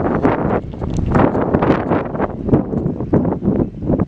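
Wind buffeting the microphone: a loud, gusty rumble that comes and goes in irregular surges.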